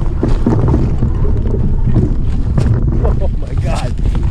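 Wind buffeting the camera microphone as a steady rumble, with scattered knocks and rattles as the bike rolls over rocks and driftwood.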